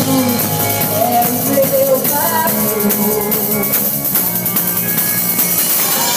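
Live band playing a song: electric bass, drum kit with cymbals and congas, with a wavering melody line above them.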